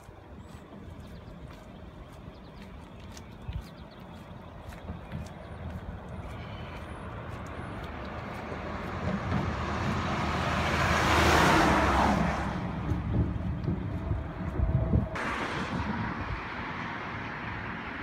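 Highway traffic passing close by: a semi truck's noise builds, peaks about eleven seconds in and fades, then a second rush of traffic noise starts abruptly near the end.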